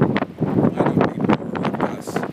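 Strong, gusty wind of around 70 miles an hour buffeting the microphone in loud, uneven surges.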